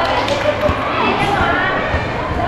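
Basketballs bouncing on a concrete court, a few separate thuds, over the chatter of the people around the court.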